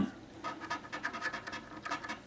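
A poker chip's edge scratching the coating off a paper scratch-off lottery ticket in quick, repeated short strokes, starting about half a second in.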